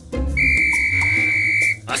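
A police whistle gives one long, steady, shrill blast of about a second and a half, over background music.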